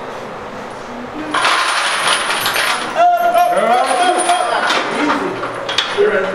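Metal chains clinking on a loaded squat bar during a rep, with a voice calling out about halfway through.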